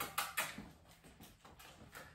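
Faint footsteps on a tile floor: a few sharp taps in the first half second, then softer, scattered ones.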